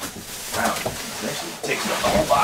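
Cardboard box and plastic wrapping rustling and scraping as a compact washer-dryer unit is pulled up out of its shipping box, with a short grunt of effort.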